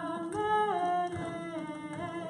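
A woman singing a wordless nigun melody in long held notes. The pitch steps up about a third of a second in and drops back down shortly after.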